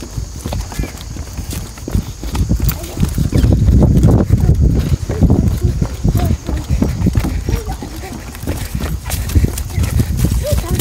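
Irregular knocking and clattering on wooden boardwalk planks: footsteps and a small balance bike's wheels rolling over the boards, loudest from about three to six seconds in.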